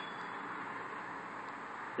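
Steady background noise, an even hiss with no distinct events.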